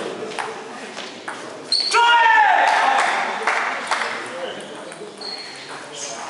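Table tennis rally: the ball clicks off bats and table at an uneven pace. About two seconds in comes a loud shout with falling pitch. Brief high squeaks of shoes on the court floor are heard twice.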